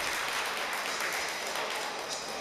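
Crowd applauding, the clapping slowly dying away.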